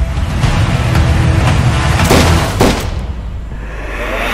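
Dramatic film-trailer music laid over heavy booms, with two sharp impact hits about two seconds in, then easing off.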